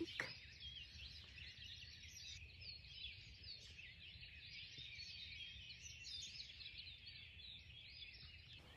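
Faint dawn chorus: many birds chirping and trilling at once, over a faint low rumble.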